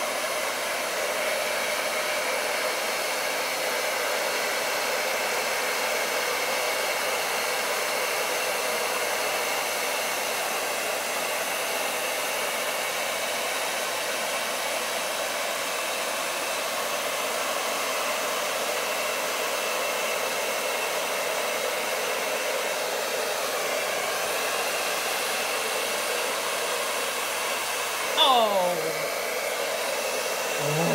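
A hair dryer runs steadily on high, blowing wet acrylic paint across a canvas. Near the end there is a brief sound that slides down in pitch.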